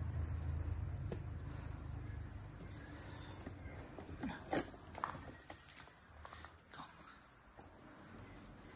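Crickets calling at night: one high, steady trill runs throughout, while a second, slightly lower call in rapid pulses sounds for about the first four seconds, stops, and starts again about six seconds in.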